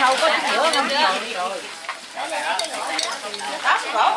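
Long chopsticks tossing cooked noodles in a large aluminium pot, the wet noodles shifting, with a few light clicks against the metal.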